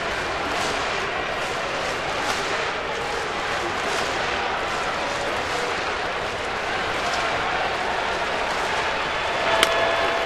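Ballpark crowd noise, a steady din of thousands of fans with scattered claps. Near the end comes a single sharp crack, a wooden bat meeting the pitch for a ground ball.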